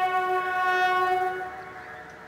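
Several military bugles sounding together, holding one long note that fades away about one and a half seconds in, at the close of a phrase of a ceremonial bugle call.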